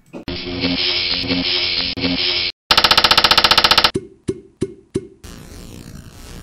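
Music sting for a channel logo intro. A loud chord pulses about twice a second, cuts off briefly, and gives way to a rapid buzzing stutter. Four short hits and a soft hiss follow.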